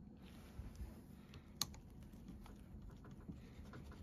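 A few faint clicks, with one sharper click about one and a half seconds in, from a steel screwdriver shifting against the energised magnetic base of a Hitachi MB-21A magnetic drill.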